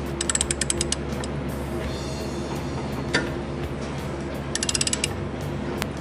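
A socket ratchet on the crankshaft pulley bolt of a Suzuki Samurai engine clicks as it is swung back and forth to turn the engine over by hand and bring the timing marks into line. There are two quick runs of even clicks, one just after the start and one near the end, with a few single clicks between them.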